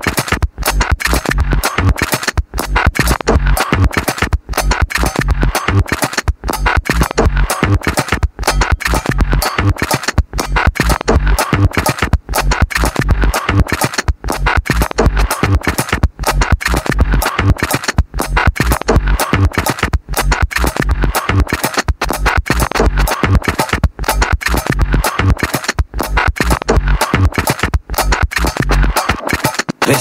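Instrumental electronic dance track with a steady bass-drum beat under dense, choppy electronic sounds, with a brief drop in the sound about every two seconds.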